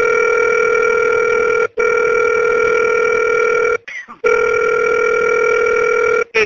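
A steady telephone line tone heard over the phone line, like a dial tone, holding one pitch. It cuts out briefly about one and a half seconds in and again for a moment about four seconds in.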